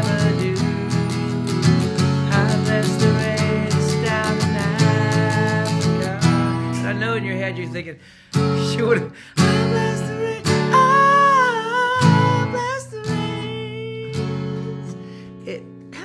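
Acoustic guitar with a capo, strummed in a busy, steady rhythm for about six seconds and then in slower single chords, with a man singing the melody over it. About eleven seconds in he holds a long, wavering note, and a last chord rings out and fades near the end.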